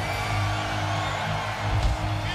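A rock band's amplified electric guitars and bass ringing on a low, steady note, with a large festival crowd cheering underneath.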